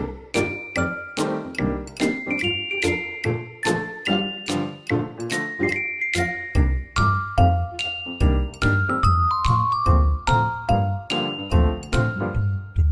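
Light, cheerful background music: a melody of short, bright notes, about three or four a second, over a steady beat. A deeper bass part comes in about six and a half seconds in.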